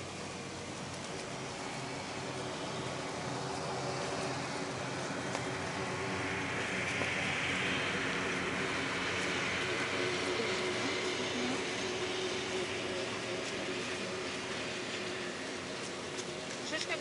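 A distant vehicle passing: a steady rushing noise with a faint hum that slowly swells to its loudest about halfway through and fades again.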